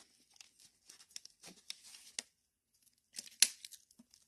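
Irregular crackling and rustling noises in short scattered bursts, with one sharp, louder crackle about three and a half seconds in.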